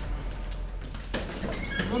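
A person's voice comes in about a second in and runs into a word called out near the end, over a steady low hum.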